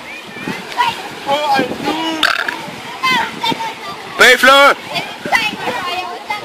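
Scattered voices of people chatting around a swimming pool, with one loud, half-second vocal call about four seconds in.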